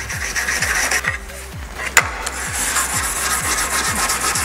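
A small hand brush scrubbed back and forth over aluminum plate, cleaning off the oxide layer before welding, with a sharp click about halfway. Background music with a steady beat plays underneath.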